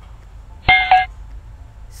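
A short electronic beep of two quick tones in a row, a few steady pitches together, clearly louder than the low room hum around it.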